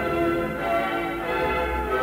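Church bells ringing, several bells sounding one after another with their tones overlapping and ringing on.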